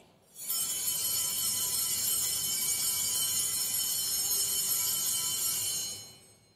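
Altar bells shaken in a continuous bright jingling ring for about five seconds, starting half a second in and stopping sharply near the end: the bells rung at the elevation of the chalice after the consecration.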